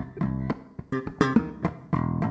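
Electric bass guitar playing a funky line of short, sharply plucked notes with percussive clicks between them.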